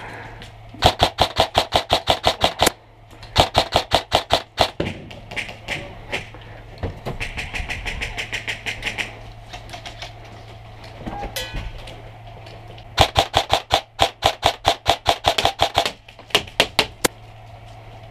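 Airsoft rifle firing rapid strings of sharp cracking shots in several bursts, the longest about three seconds, with a quieter lull in the middle.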